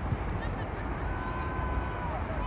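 Outdoor game ambience: a steady low rumble, with a single thump just after the start. In the second half a faint voice calls out, holding one note for about a second before it drops off.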